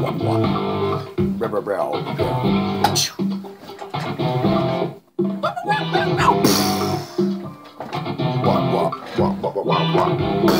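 Plucked guitar music, note after note, with a brief break about five seconds in.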